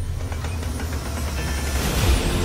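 Amusement-park ride machinery sound effects starting up: a low rumble with clicking and clattering early on, then a rising whoosh that builds to a hit at the end.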